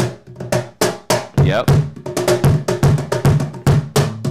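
A drum groove on a cajon played with a kick pedal, with low thumps from the pedal beater under a steady run of sharp, crisp stick hits.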